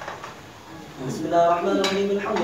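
A short lull, then a man's chanting voice starting again about a second in, with two sharp clinks, the second one louder, near the end.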